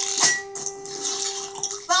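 Cartoon soundtrack heard through a TV speaker: a held note in the background music, with a brief noisy sound effect about a quarter second in.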